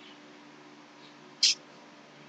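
A quiet pause in a man's talk with a faint steady room hum, broken once about one and a half seconds in by a brief hissy sniff.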